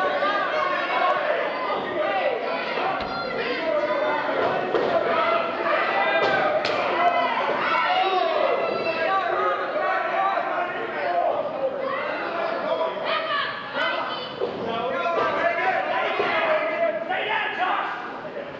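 Overlapping voices of wrestlers and spectators shouting and talking throughout, echoing in a large hall, with a single sharp smack about 6.5 seconds in.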